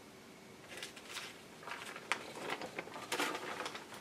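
Teflon pressing sheet being handled and peeled back off a piece of heat-distressed Tyvek, giving a run of crinkling rustles that starts about a second in and lasts about three seconds.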